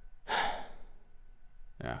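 A man's single breathy sigh, about half a second long, followed near the end by a short spoken "ja". The sigh sounds exasperated.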